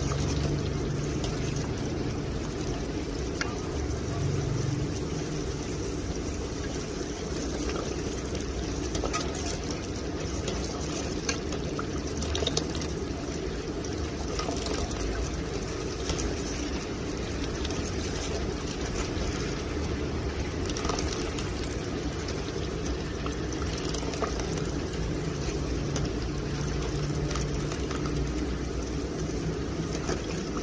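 A ladle stirring and scooping a thick liquid in a large aluminium pot. The liquid sloshes and pours back off the ladle, with scattered light clicks of the ladle against the pot.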